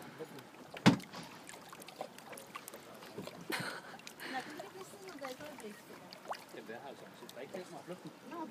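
Water lapping and splashing at the surface, with faint background voices. One sharp knock comes about a second in, and a short splashy burst a few seconds later.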